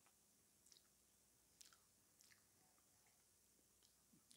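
Near silence with a few faint clicks and crunches of someone chewing a mouthful of apple crumble, its steel-cut-oat topping a little crunchy.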